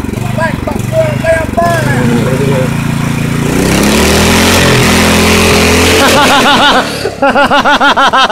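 Riding lawn mower engine on a stripped-down rail chassis running steadily, then revving up, its pitch rising over a couple of seconds as the machine pulls away. Laughter comes in near the end.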